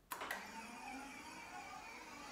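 Electric bike work stand's motor running steadily as its column lowers the clamped e-bike, starting with a click.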